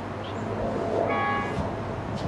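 A short horn blast from the approaching Indian Pacific's diesel locomotive, a chord of several steady tones lasting about half a second, about a second in, over a steady low rumble.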